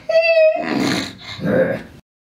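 A person laughing: a short, high, held note, then two breathy bursts of laughter.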